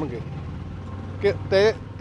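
Brief pause in a man's speech over a steady low mechanical hum, then a couple of spoken words near the end.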